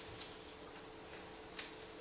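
A short pause in speech: faint room tone with a steady low hum and two faint clicks, one just after the start and one near the end.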